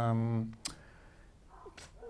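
A man's voice through a handheld microphone draws out a word and trails off. It is followed by a pause holding two short sharp clicks, one just after the voice stops and one near the end.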